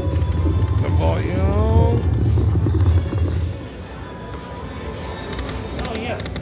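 Buffalo Link video slot machine playing its spin sounds as the reels turn: a loud low drone for about the first three and a half seconds, with a rising sweep of tones a second or so in. After that, quieter casino background sound.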